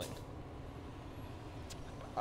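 Steady low rumble of outdoor urban background ambience, with a faint click near the end.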